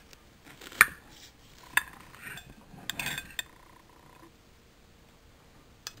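A knife clinking against a glass cake plate and china as a slice of cake is cut and served: a few sharp clinks in the first half, the loudest about a second in, then quieter handling.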